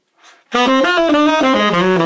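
Tenor saxophone playing a fast run of jazz eighth notes, starting about half a second in. The phrase is played with a downbeat (the D in the E-flat major 7 measure) tongued instead of slurred, which throws the flow of the tongue-the-upbeat, slur-into-the-downbeat articulation off.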